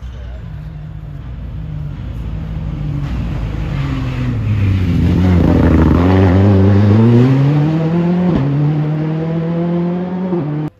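Rally car engine passing close on a stage, growing louder to a peak past the middle. The revs fall as it slows, then climb as it accelerates away. There is a short break about eight seconds in, then the revs hold steady.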